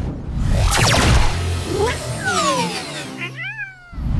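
Cartoon music with sound effects: a rushing whoosh, then a run of falling slide-like glides, and a short call that rises and falls near the end, like a cartoon animal's meow.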